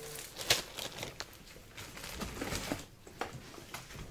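Trading cards being handled: soft rustling and scattered light clicks and taps, the sharpest tap about half a second in.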